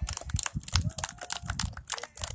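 Handling noise from the recording phone as it is moved: a rapid, irregular run of clicks and rustles with dull low thuds.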